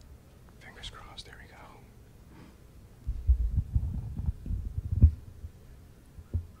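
Faint muttering early on, then about two seconds of low thuds and rumble, loudest just after five seconds.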